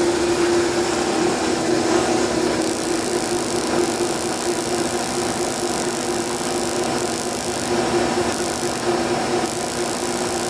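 Van de Graaff generator running: its small sewing-machine motor and latex charging belt give a steady hum over a hiss. Stretches of higher hiss come and go as small sparks jump from the steel dome to a metal rod held against it.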